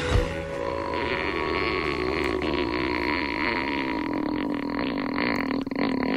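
A long, steady, buzzy drone with its pitch slowly sinking, from the soundtrack of the cartoon parody edit being watched.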